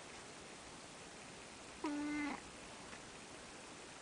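An orange tabby domestic cat gives one short, steady meow, about half a second long, about two seconds in.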